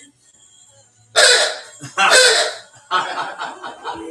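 Laughter: two loud bursts about a second apart, then softer laughing, after a brief lull in the guitar playing.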